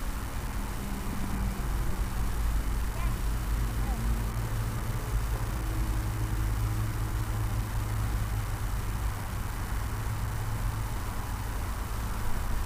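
Open-air ambience at a cricket ground: a steady low rumble with faint, indistinct voices in the distance.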